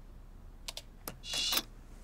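A few sharp clicks of laptop keyboard keys being pressed, followed by a brief, brighter noisy sound lasting about half a second.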